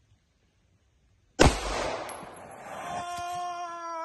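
A single loud rifle shot about a second and a half in, with a long trailing decay. The shot is aimed at a .50-calibre cartridge lodged in a side-by-side shotgun barrel downrange, to set off its powder. A held, pitched sound follows for over a second.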